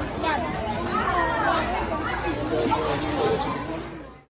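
Indistinct chatter of several voices around a dinner table, fading out at the very end.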